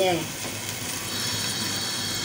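Spice masala sizzling steadily as it fries in an aluminium pot.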